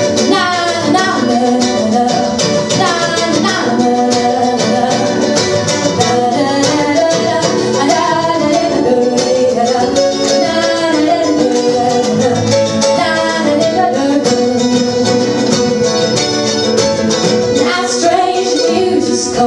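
Live folk music between sung verses: strummed acoustic guitar with other instruments, and wordless 'na na' singing in the first few seconds.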